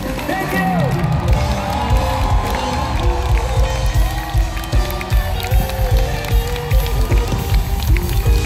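Live band music in a concert arena, with heavy, pulsing bass, sustained keyboard chords and a male singer's voice, heard from within the crowd along with audience noise.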